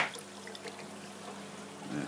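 Water trickling and pouring from a pipe outlet into a marine aquarium's filter section, over a steady low hum from the pumps. A single sharp knock comes right at the start.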